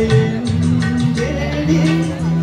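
A man singing into a handheld microphone over music with a steady beat, heard through the hall's sound system.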